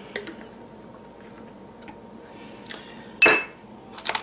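Small glass jar being handled and set down: a light click near the start, then one sharp clack with a brief ring about three seconds in as the jar lands on the counter.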